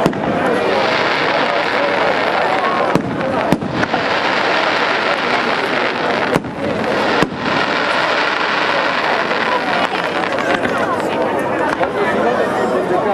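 Fireworks display: aerial shells bursting with several sharp bangs over a dense, continuous rush of noise.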